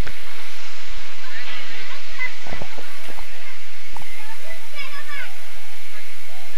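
A steady, loud hiss of background noise, with faint distant voices calling out a few times.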